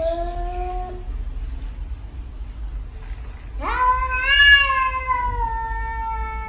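A domestic cat meowing in long drawn-out calls. One falls in pitch and trails off about a second in, and a louder, longer one starts with a sharp rise about three and a half seconds in, then slowly falls in pitch.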